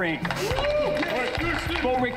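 Speech: a voice talking, with no other distinct sound.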